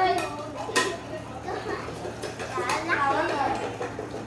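Dice clattering in a metal bowl over a plate as it is shaken for a Bầu Cua dice game, with a sharp clink about three quarters of a second in, among children's voices.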